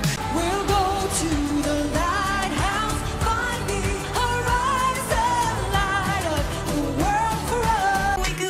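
Pop music with a lead vocal over a full backing track and beat, from live Melodifestivalen song performances. One song gives way to another within the first few seconds.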